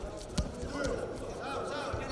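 Voices calling out across a large hall, with one sharp thud about half a second in from wrestlers' contact on the mat.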